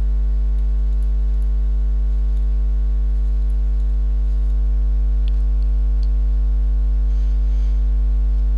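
Steady electrical mains hum in the recording: a loud, unchanging low hum with a stack of fainter steady tones above it.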